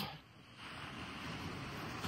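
Faint, steady wash of ocean surf on the beach, coming up about half a second in after a brief lull.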